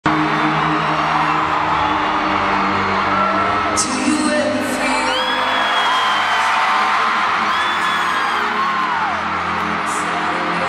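Live concert intro music with steady held chords, under a loud arena crowd screaming and cheering; single high screams rise and fall above the crowd noise.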